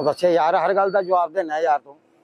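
Speech only: a man talking loudly.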